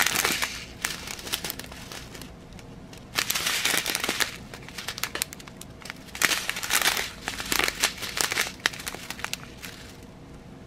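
Clear plastic bag of round diamond painting drills being handled, crinkling with many small clicks of the drills shifting against each other. It comes in three spells of a second or two each, with quiet between.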